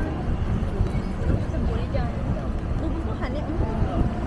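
Low rumble of a moving vehicle's engine and tyres on the road, heard from inside the vehicle, with faint voices in the background.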